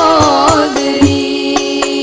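Women singing an Arabic sholawat melody into microphones. An ornamented, wavering phrase settles into a long held note, over rebana frame drums struck in a steady beat.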